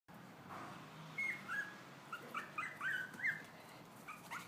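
Long-coat Chihuahua puppy whimpering: about seven short, high-pitched whines in quick succession, starting about a second in.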